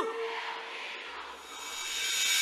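A woman's held sung note cuts off at the start, its echo fading within half a second, leaving the noise of a large concert crowd cheering, which swells near the end.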